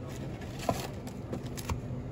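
Trading-card packaging being handled: a cardboard mega box opened and foil packs set down on a glass counter, with a couple of light taps. A steady low hum runs underneath.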